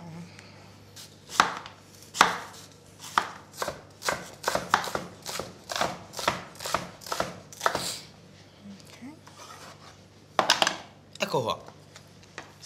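Chef's knife chopping an onion on a cutting board: quick, uneven strokes about two or three a second, a short pause, then a few more strokes near the end.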